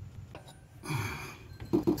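A person's short, breathy exhale about a second in, after a few faint clicks.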